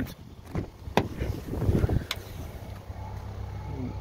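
Rear door of a 2022 Ford Maverick pickup being opened: a sharp click of the handle and latch about a second in, rustling handling noise, then a second click just after two seconds.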